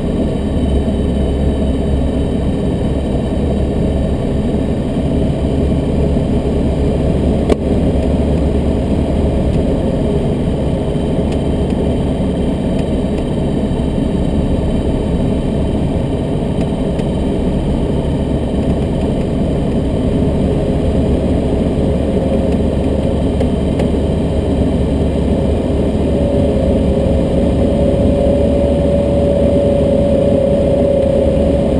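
Light aircraft's engine and propeller droning steadily in flight, heard inside the cockpit. A steadier, higher note joins the drone near the end, and there is a single click about a quarter of the way in.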